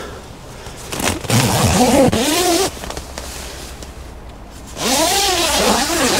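Camouflage fabric of a pop-up photography hide rustling and scraping as a person shifts about inside it, in two stretches: about a second in and again near the end.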